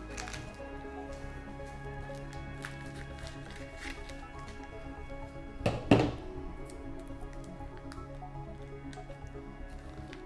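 Background music with held notes. Over it, a plastic vacuum bag is handled and opened, with faint crinkles and one short loud noise about six seconds in.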